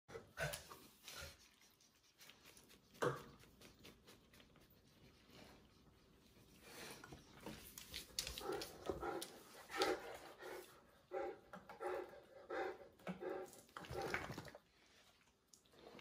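Dogs at play on a hardwood floor: a few sharp knocks of paws and claws in the first seconds, then a run of short, pitched dog vocalisations, about two a second, from about the middle until near the end.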